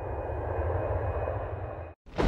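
Airplane engine sound effect on a claymation soundtrack: a steady engine drone that swells in and grows a little louder, then cuts off suddenly near the end.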